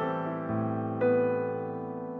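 Piano music: a low bass note enters about half a second in, then a chord is struck about a second in and left to ring, slowly dying away.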